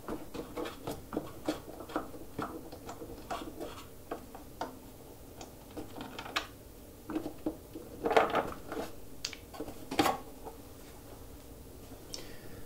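Clear plastic blade cover of a Ryobi AP1301 thickness planer being unclipped and lifted off: a string of light plastic clicks and taps, with a louder clatter about eight seconds in and a sharp knock about ten seconds in.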